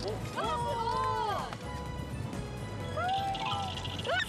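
Several people crying out in excitement at leaping dolphins, drawn-out exclamations that rise and fall in pitch, in three bursts: about half a second in, about three seconds in, and at the very end. Background music plays underneath.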